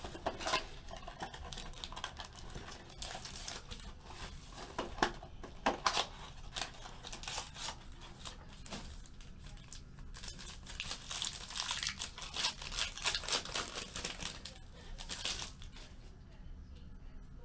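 Crinkling and tearing of packaging as a trading-card box is opened by hand, with cardboard and a foil-wrapped pack handled; sharp rustles come in the first half, and the crinkling grows denser and steadier in the second half.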